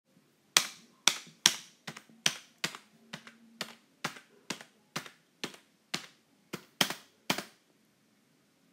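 Typing sound effect: a run of sharp key clicks, about two a second and a little uneven, each with a short ringing tail, keeping time with letters appearing one by one.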